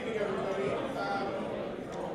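Indistinct talking and chatter of voices in a large hall, with no clear words.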